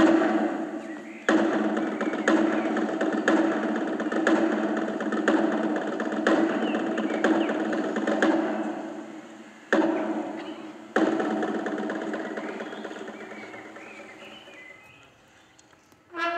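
Military band drums: a sustained drum roll with a sharp beat about once a second. The roll fades, starts afresh about ten and eleven seconds in, then dies away.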